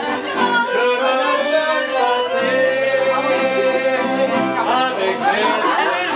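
Live acoustic guitar and accordion playing a tune together, with a long held note in the middle.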